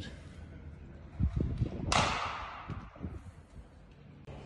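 A few low thumps, then about two seconds in a sudden whoosh that fades away over about a second.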